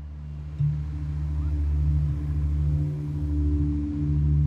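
Background music score: a low, sustained drone of held notes, with the chord shifting about half a second in.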